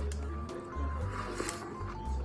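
Light, cute background music with a regular pulsing bass beat and held melody notes.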